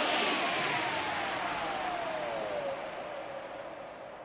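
A hissing whoosh fading away, with a single tone sliding steadily downward over about the first three seconds: a downward-sweeping transition effect as the background music fades out.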